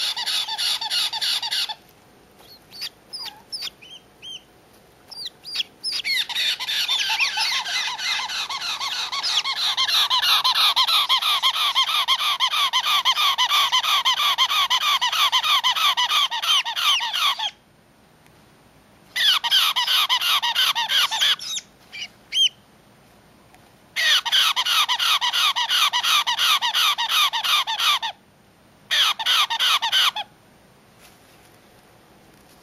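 Baby caique chicks screaming: rapid, pulsing calls in bouts several seconds long, broken by short pauses, with a few single calls between the first bouts. This is the screaming that baby caiques keep up even when their crops are full.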